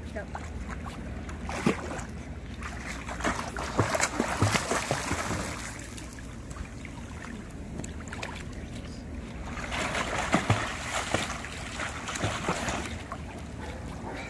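Pool water splashing as a child kicks along holding a foam kickboard, in two bouts of choppy splashing, about four seconds in and again about ten seconds in.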